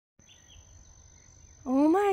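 Faint outdoor meadow ambience with a thin, steady high-pitched tone. A person's voice exclaims near the end and is the loudest sound.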